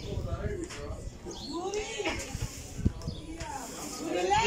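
Indistinct voices of people talking nearby, with one sharp knock a little before three seconds in.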